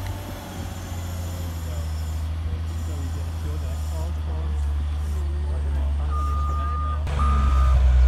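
Caterpillar wheel loader's diesel engine running steadily as it tips sand from its bucket. Its reversing alarm starts about six seconds in, sounding two long beeps, and the engine gets louder just after the first beep.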